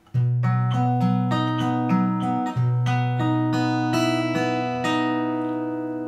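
Steel-string acoustic guitar fingerpicked: single plucked notes about three a second, rolling through chords over a low bass note that rings underneath.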